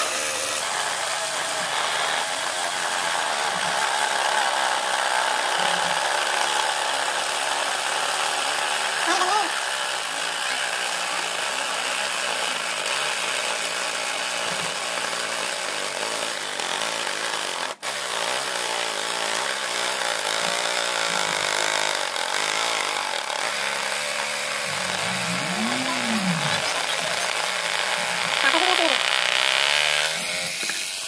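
Homemade jigsaw powered by a 12V high-speed DC motor, running steadily as its crank-driven blade saws through MDF board. The sound breaks off for a moment about halfway through.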